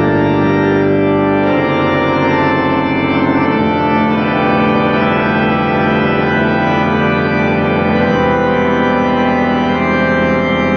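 Pipe organ built by Burton K. Tidwell playing slow, sustained full chords, with the harmony changing every few seconds.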